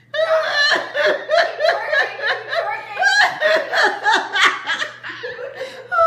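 A woman laughing hard, in quick repeated bursts of a few a second, briefly softer about five seconds in.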